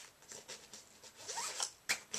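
Backpack zipper being pulled open in a few short pulls, with a sharp tap near the end.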